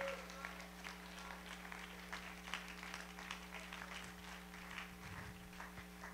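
A quiet pause: a steady low electrical hum under faint, scattered soft ticks and taps and a little distant voice sound.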